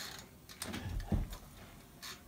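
Mechanical wind-up timer dial on an Eastwood powder coating oven being turned to 20 minutes for the cure, giving faint ratcheting clicks, with a couple of soft knocks about a second in.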